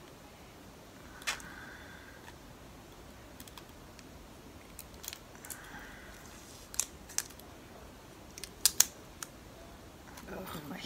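Fingers picking at the plastic wrapping on a small lipstick tube: scattered small plastic clicks and brief faint crinkling, with the loudest clicks near the end. The wrapping is tearing partway instead of coming off.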